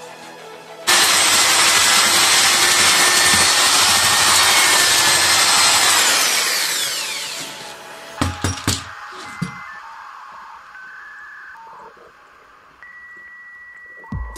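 Electric drill with a paddle mixer running loud in a bucket of masonry mortar. It starts about a second in and winds down with a falling whine after about six seconds, then a few knocks follow.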